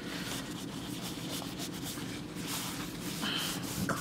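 Paper towel rubbing over the back of an iPhone 7 as it is wiped clean: faint, steady rubbing.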